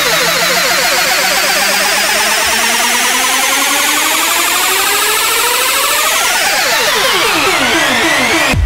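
Electronic dance music build-up: layered synth tones sliding in pitch like sirens, with the deep bass dropping out about two and a half seconds in and several tones rising steeply towards the end, just before the beat returns.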